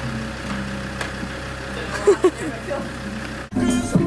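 A vehicle engine idling with a steady low hum, with two short pitched sounds about two seconds in. Near the end it cuts abruptly to music.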